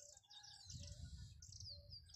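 Small birds chirping faintly, a busy run of short high notes and quick falling whistles.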